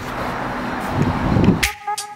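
Roadside traffic noise, a steady rushing haze from passing cars. Near the end it cuts to background music with a heavy bass beat.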